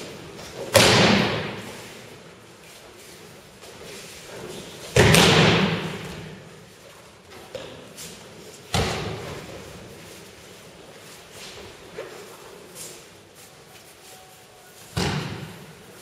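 Aikido breakfalls: thrown partners' bodies landing on tatami mats, four heavy thuds a few seconds apart, each ringing on in a large hall. A few lighter thumps fall between them.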